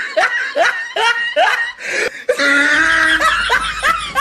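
A person laughing in short repeated bursts, about two to three a second. About two and a half seconds in, this gives way to a drawn-out voice over a low hum.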